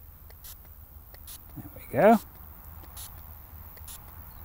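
Faint, short spritzes from a hand pump spray bottle misting water, several of them about a second apart.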